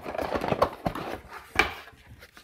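Cardboard packaging being handled: a scraping rustle as a cardboard insert is lifted inside the box, a few light taps, and a sharper knock about a second and a half in.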